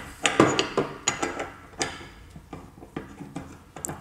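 Green plastic threaded pipe sleeve being screwed onto the threaded end of a stainless steel magnetic water treatment tube: scattered light clicks and knocks of plastic on metal, most in the first two seconds and one more near the end.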